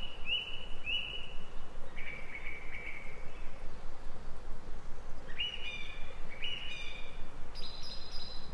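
A songbird singing in short phrases of clear whistled notes: three quick notes at the start, a lower phrase about two seconds in, and two or three richer phrases in the second half. A constant background hiss runs underneath.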